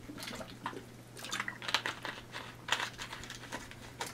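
A man drinking from a thin plastic water bottle: gulps of water with the bottle crinkling, heard as a string of faint, irregular small clicks and crackles.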